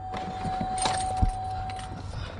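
Light metallic jangling and rustling of small objects being handled, with a few sharp clicks, over a steady high-pitched tone.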